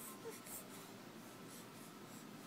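Faint scratchy rustling, with one very short, soft baby sound about a quarter second in.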